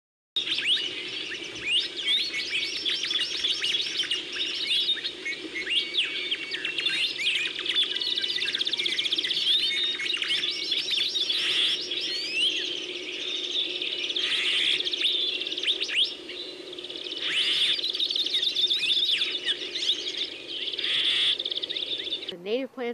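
A chorus of many birds singing at once: dense, overlapping chirps and rapid trills, with a steady low drone underneath.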